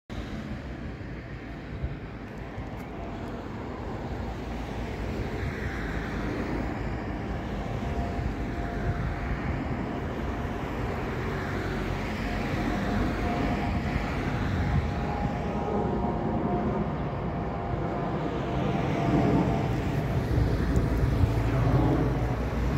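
Road traffic: a steady rushing vehicle noise that slowly grows louder, with a faint drone in the second half.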